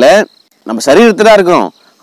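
A man talking, with a faint, steady, high cricket trill behind his voice in the pauses.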